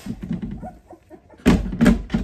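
Shuffling and handling noise as a small puppy is held close, then two loud, dull thumps in quick succession about a second and a half in.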